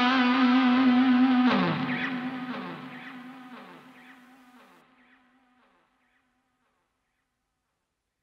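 Final electric guitar note held with vibrato and ringing out, overlaid by echoing downward slides that repeat about twice a second. It fades away to silence about four and a half seconds in.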